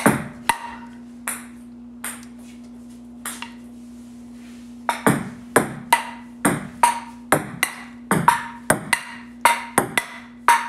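Table-tennis ball being hit in a solo rally against a wall: paddle strikes and bounces off the table and wall, each a sharp click with a short ping. A few scattered hits come first, then from about halfway a fast, even rally of about three hits a second.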